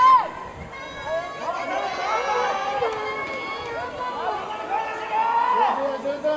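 Several baseball players shouting and calling out across the field, many drawn-out calls overlapping one another, with a loud shout right at the start.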